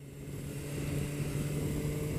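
Motorcycle engine running steadily at cruising speed, heard from the rider's seat over a steady rush of wind noise; the sound fades in over the first second.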